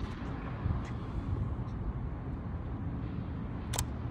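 Steady low rumble of outdoor city background noise, with one sharp click near the end.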